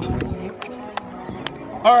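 Hand claps: three sharp claps about half a second apart, with music playing underneath.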